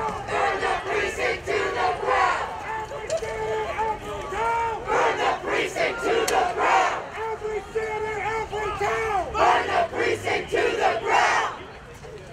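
A marching crowd of protesters chanting and shouting slogans together, many voices in repeated rhythmic phrases.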